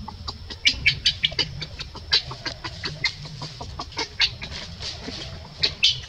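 A quick, irregular run of short, sharp clucking chirps from an animal, several a second.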